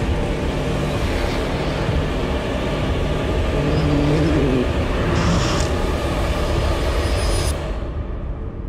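Rally montage soundtrack: vehicle engine noise layered with music, cutting off abruptly near the end.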